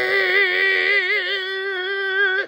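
A woman's voice holding one long, strained 'argh' note through bared teeth, a comic cry of exasperation; the pitch stays level, then wavers with a widening vibrato in the second half.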